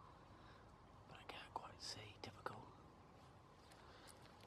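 Faint hushed whispering, a few quick whispered words about a second and a half to two and a half seconds in, otherwise near silence.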